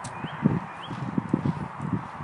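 A man biting into and chewing a biscuit right at the microphone: quick, irregular crunching, several chews a second.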